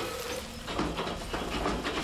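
A wheel loader's engine runs while a bucketload of shredded wood and waste pours onto the ground, making a rushing noise with many small clattering impacts.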